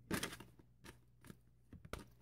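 Tarot deck being shuffled overhand: faint card slaps and slides, a short flurry just after the start and a few single taps later, the last near the end.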